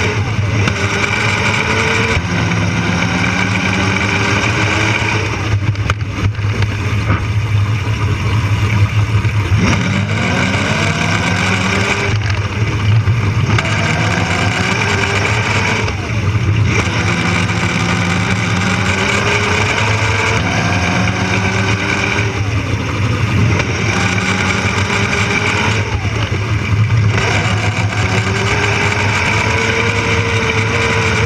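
Electric drive motor and drivetrain of a Power Racing Series kart (a rebuilt Power Wheels ride-on) running at speed. Its whine climbs in pitch several times as it accelerates out of turns and drops as it slows, over a steady low hum.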